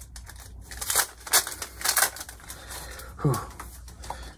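Foil wrapper of a Pokémon TCG booster pack crinkling and tearing as it is opened, with a few sharp crackles about one and two seconds in.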